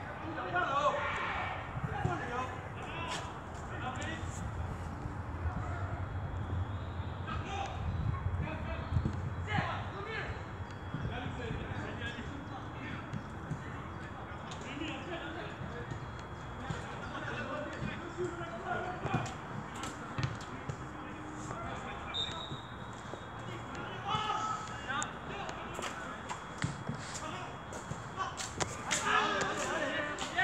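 Indistinct low voices of people talking while walking, with footsteps thudding on a paved path.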